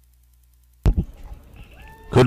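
A commentary microphone cutting in with a sudden pop a little under a second in, after near silence, followed by faint open-mic background noise and a short faint rising tone near the end.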